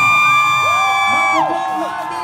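A singer's long held high note over the PA, cut off about a second and a half in, with crowd whoops and cheering.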